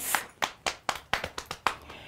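A quick, uneven run of about eight sharp hand slaps, a storyteller's sound effect for Brer Fox hurrying back down the road.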